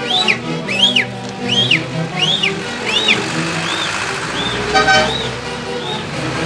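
Andean folk band playing huaylarsh music, a high sliding melody line repeating under steady lower accompaniment. A short car horn toot sounds about five seconds in.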